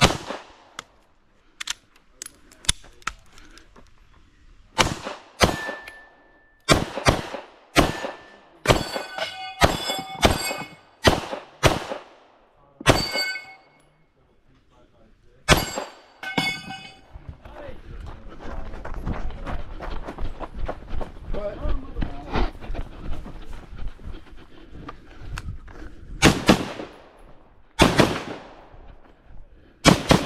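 Glock 17 9mm pistol firing strings of shots at an irregular pace, with steel targets ringing on hits. In the middle comes a stretch of continuous rough noise without shots, and a few more shots follow near the end.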